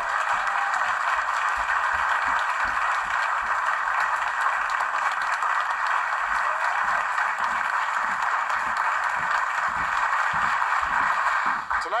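Audience applauding steadily, heard thin and narrow through a television's speaker.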